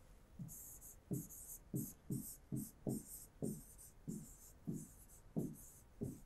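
Stylus writing on an interactive display screen: a run of short scratchy pen strokes with soft taps, about two a second, as a word is written out.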